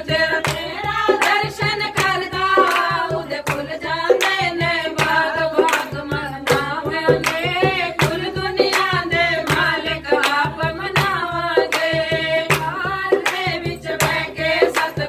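Several women singing a Hindi devotional bhajan together, with hand-clapping and a dholak drum keeping a steady beat.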